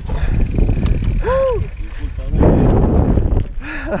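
Mountain bike tyres rolling over a loose dirt trail with wind rush on the microphone, and a short vocal call a bit over a second in. Past the middle comes a louder rush of tyre-on-dirt noise as another mountain bike passes close.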